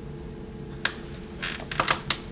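A few short taps and a brief rustle from paperback books being handled and set down, over a steady low hum.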